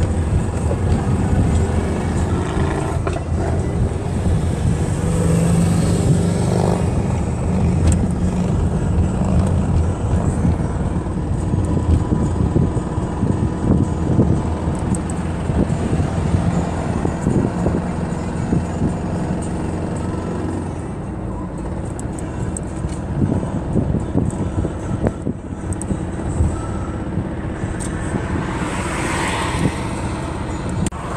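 Cabin noise of a van driving at motorway speed: a steady low rumble of engine and tyres on the road.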